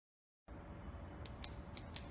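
A low hum starts about half a second in, and from about a second in a few sharp, irregular clicks sound over it, about four or five a second.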